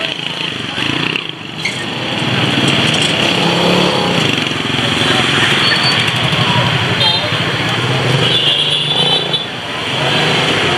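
Busy street ambience: motorbike engines running and passing, with voices talking in the background.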